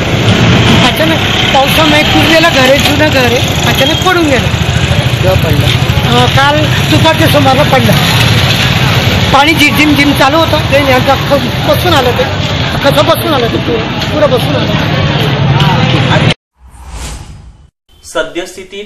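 A man talking loudly over steady street traffic noise, with vehicle engines rumbling in the background. The sound cuts off abruptly near the end.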